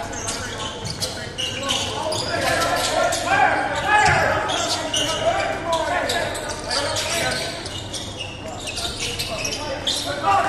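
A basketball dribbling and bouncing on a hardwood gym floor during live play, with players' and spectators' voices mixed in, echoing in the gym.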